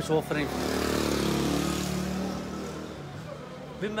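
A motor vehicle engine passing by, swelling about half a second in and fading away over the next few seconds.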